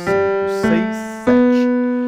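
Electronic keyboard with a piano sound playing single notes of an ascending C major scale: three notes struck evenly, each ringing and fading before the next.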